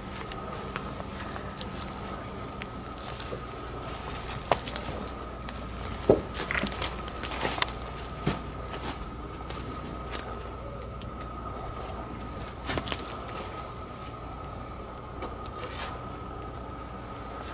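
A few scattered knocks and clicks, the sharpest about six seconds in, over a steady faint high-pitched hum.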